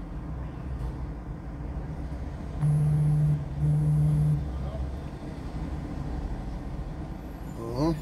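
A phone buzzing twice with an incoming WhatsApp message, each buzz just under a second long, over a low rumble of street traffic.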